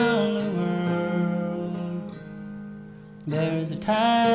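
A man singing with his acoustic guitar: a long note slides down at the start, holds and fades away, then the guitar is strummed again near the end.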